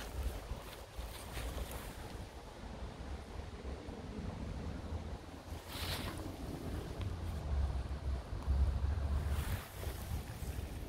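Wind buffeting the microphone outdoors: a low rumble that swells near the end, with a brief rustle about six seconds in.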